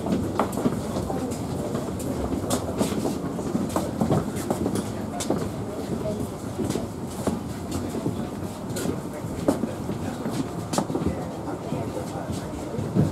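Footsteps and shuffling of a line of passengers walking along an airport jet bridge, with irregular clicks and knocks from the walkway floor over a steady low rumble. Murmured voices of the passengers mix in.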